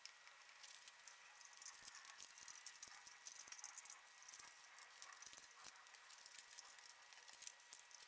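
Near silence with faint, scattered clicks and light rattles: small electrical parts and wires handled while being fitted into a wooden control box.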